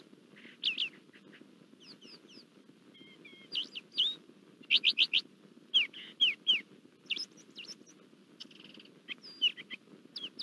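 Small birds chirping: many short, quick calls that sweep up and down, scattered irregularly in clusters, over a faint steady low hum.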